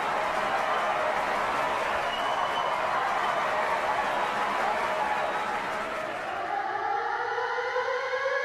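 A steady wash of noise that fades out around six seconds in, as a siren starts up and wails upward in pitch.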